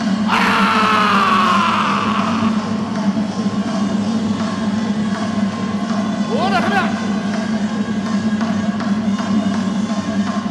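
Traditional Burmese ringside music for a Lethwei fight: a hne (shawm) plays a sliding melody over a steady low drone, with crowd noise underneath. A long falling phrase comes right at the start, and quick rising swoops come about six seconds in.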